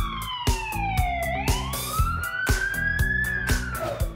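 Police car siren wail sound effect, one slow glide falling for about a second, rising for about two seconds and starting to fall again near the end, over music with a steady beat of about two hits a second.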